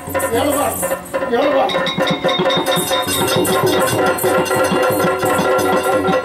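Yakshagana ensemble music: a sung voice over a steady drone, joined about a second and a half in by rapid, dense maddale drum strokes and the clink of small hand cymbals.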